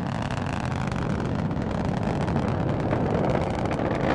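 Delta IV Heavy rocket's three RS-68 engines in powered ascent: a steady, rough rumble with crackle, strongest in the low end.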